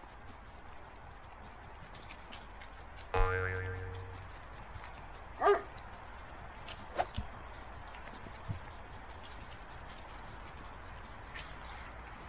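A single ringing, boing-like tone struck about three seconds in and fading over about a second, then one short dog bark about two seconds later. Underneath, a steady rustle of a dog's paws through dry fallen leaves, with a few light snaps.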